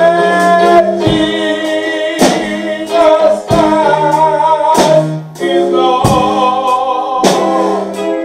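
Live church band playing slow gospel music: a drum kit with a strong hit about every second and a quarter under held keyboard chords, with singing over it.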